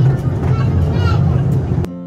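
Miniature park train running with a steady low rumble, with people's voices in the background. Near the end it cuts off suddenly and music with clear notes begins.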